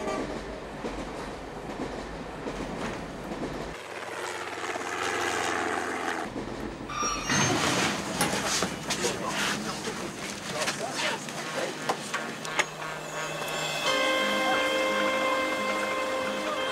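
A train running on rails, rumbling at first, then a dense run of sharp knocks and clattering from about seven seconds in. Steady held tones come in near the end.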